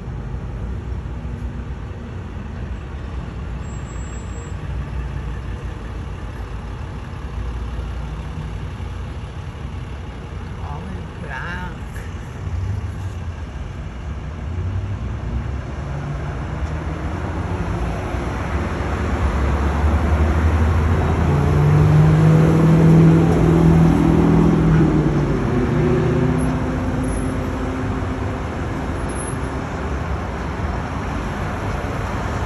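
Street traffic with a steady low rumble. A vehicle's engine grows louder from about halfway, is loudest about two-thirds of the way through, then fades as it passes.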